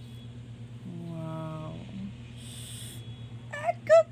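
A woman's wordless cooing over a steady low background hum. A low hum lasts about a second, then a brief soft rustle of fabric, then a rising high-pitched "ooh" near the end, which is the loudest sound.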